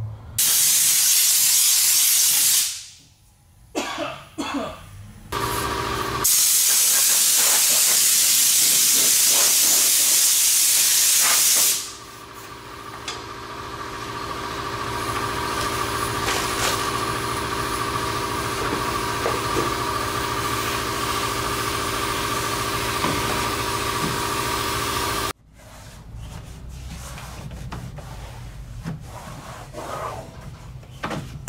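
Compressed-air blow gun blasting dirt out of a truck cab: a loud hiss for about two seconds, a few short spurts, then a second long hiss of about five seconds. After that a steady machine hum with a steady whine runs, building up at first, and cuts off suddenly about 25 seconds in, followed by faint rubbing.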